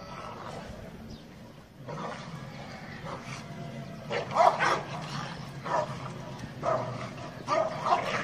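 Dog barking: four loud barks spaced about a second apart in the second half, after quieter yelps.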